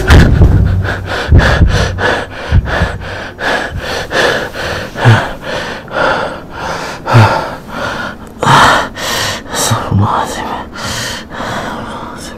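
A man breathing hard close to the microphone: fast, ragged panting breaths, a few of them voiced gasps that fall in pitch.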